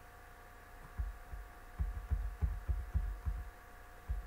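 A run of about eight soft, low, irregular thumps over a couple of seconds in the middle, over a faint steady electrical hum.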